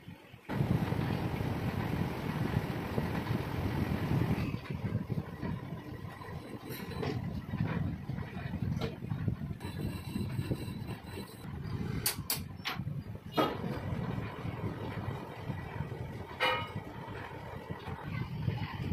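Metal lathe starting up about half a second in and running steadily, its large chuck spinning with a cylindrical oil-expeller part clamped in it. A few short, sharp metallic clicks sound over the machine noise.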